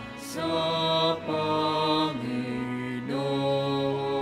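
Slow church singing with long held notes, moving to a new note about once a second.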